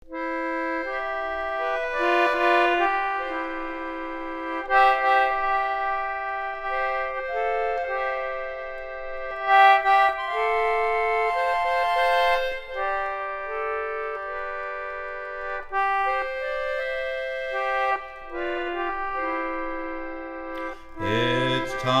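A vintage Wheatstone 48-key treble English concertina (a 'Pinhole' Aeola, circa 1898) playing a slow instrumental introduction of held chords, starting suddenly from silence. A singing voice joins just before the end.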